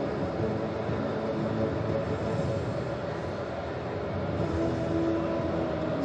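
Steady, even background noise of a large hall, a rumble with no distinct events.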